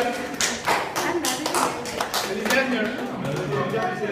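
A small group clapping, irregular hand claps for about two seconds that then die away, with voices talking.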